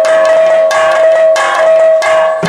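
Kirtan accompaniment: a steady held note with metallic strikes about every two-thirds of a second. The drum drops out here and comes back just after.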